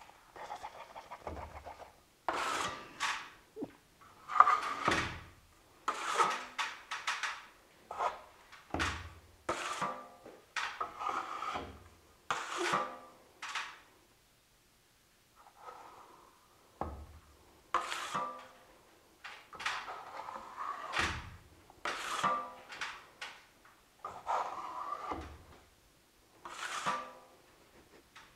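Steel drywall finishing trowel spreading and scraping joint compound along a butt joint in repeated strokes, about one every second or two, with a short pause about halfway through.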